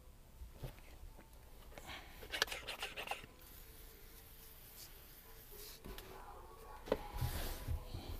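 A trigger spray bottle squirting water with a hiss, amid clicks, knocks and rustling of plastic being handled; the loudest knocks and hiss come near the end.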